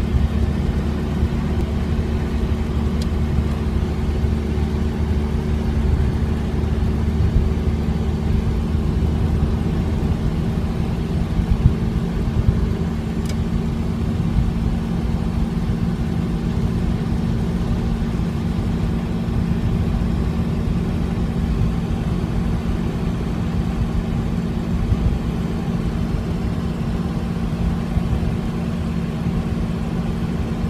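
Engine hum and road noise of an FSO Polonez, heard from inside its cabin while it cruises at a steady speed, with no revving or gear changes.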